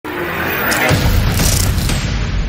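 Cinematic logo-intro sound effect: a deep boom that sets in about a second in and keeps rumbling, with two rushes of hissing noise over a music bed.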